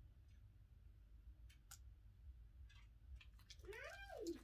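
A domestic cat meows once near the end, its pitch rising and then falling, after a few faint clicks in the otherwise near-silent room.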